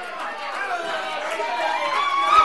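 Several congregation members' voices calling out praise at once, overlapping, while the preacher pauses.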